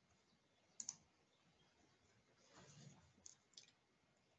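Faint computer mouse clicks, a few spread out, in near silence, with a soft rustle a little before the last two clicks.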